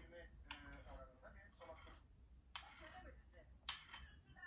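Near silence with faint low voices, broken twice, past halfway and near the end, by a short sharp scraping click: a metal spoon against a soup bowl.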